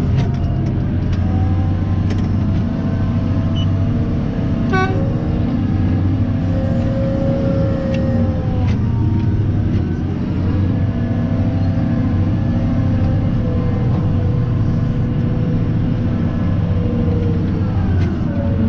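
CAT 994 wheel loader's V16 diesel engine running steadily under load, heard inside the cab as a loud, constant low drone. A short toot sounds about five seconds in, and a whine swells and fades near the middle.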